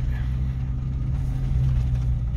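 A vehicle's engine and road noise heard from inside the cabin while driving slowly on a dirt road: a steady low rumble.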